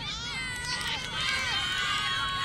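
Several women shouting and cheering at once during an ultimate frisbee point: high-pitched, overlapping calls that grow louder about half a second in.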